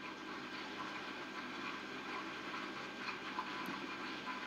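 Faint handling sounds of paper and sticky tape being pressed down on a tabletop: a quiet, even rustle with a few light ticks near the end.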